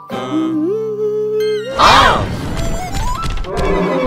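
Cartoon soundtrack music with a held humming note that steps up in pitch, a loud thump about two seconds in, then a tone that climbs in steps.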